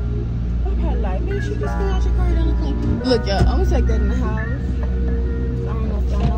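Music with a heavy, steady bass and a voice singing over it.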